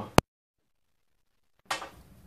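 A sharp click as a microphone plug is pulled from the recording device's jack, followed by dead silence while no microphone is connected. Sound returns about a second and a half later with a burst of handling noise as the other clip-on microphone is plugged in.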